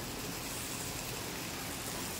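Steady rain falling on rooftops and concrete, an even hiss with no separate drops standing out.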